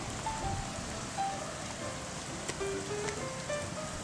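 Steady rain falling on wet pavement and grass, an even hiss, with a few soft background-music notes over it.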